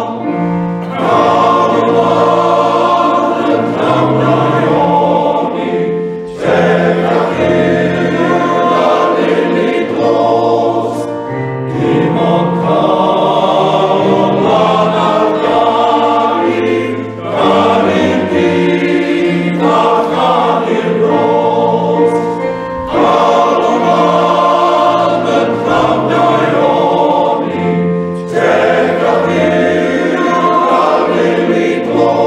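Welsh male voice choir singing in full harmony, in long phrases with a short break for breath every five or six seconds, heard over a video call.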